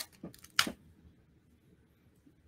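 A few brief soft clicks and rustles from hands handling craft materials in the first second, then near silence.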